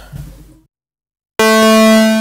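Softube Modular software modular synth (Doepfer A-110 oscillator emulations) starting to sound: a held note made of saw and square waves mixed through a VCA cuts in suddenly about a second and a half in and holds one pitch.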